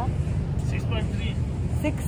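Wind buffeting a phone microphone: a steady low rumble with short, faint bits of a woman's voice.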